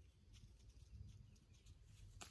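Near silence: faint low rumble of outdoor ambience with a few faint, short ticks.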